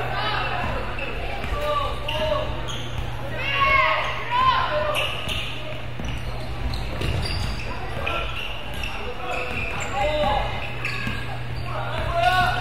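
A basketball being dribbled on a hardwood gym floor, with sneakers squeaking and voices calling out across the court, most squeaks clustered about four seconds in. A steady low hum runs underneath.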